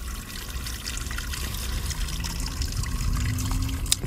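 A steady trickle of running water, even and unbroken, with a faint low hum in the second half.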